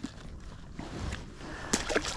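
Quiet handling noise as a crappie is unhooked by hand, then a brief splash near the end as the released fish hits the lake water.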